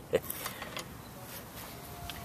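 The tail of a man's chuckle, then faint, steady background hiss with no distinct event.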